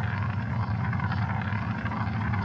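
Hammond organ played live: a thick, dense, low-heavy sustained sound.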